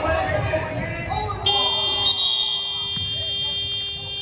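Gym scoreboard buzzer sounding a steady, sustained tone that starts abruptly about a second and a half in: the game clock running out to end the period.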